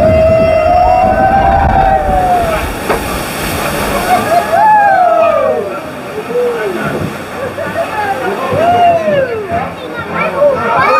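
Riders on a flume boat plunging down a waterfall drop in the dark: one long scream, then rushing, splashing water about three seconds in, followed by several short whoops.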